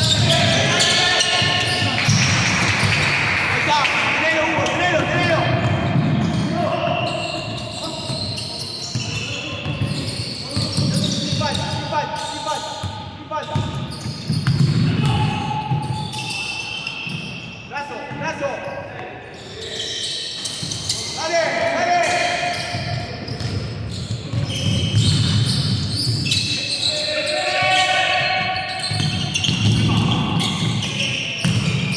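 A basketball dribbled and bouncing on a hardwood court in an echoing gym, with players' voices calling out over the play.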